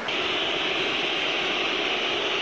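Large stadium crowd on a television broadcast: a steady, high-pitched din that comes in suddenly at the start and holds level.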